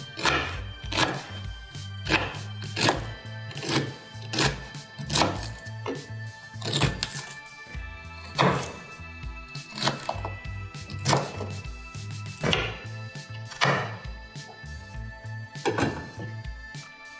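Chef's knife chopping celery stalks on a bamboo cutting board, sharp knocks on the wood at about two a second, under background music.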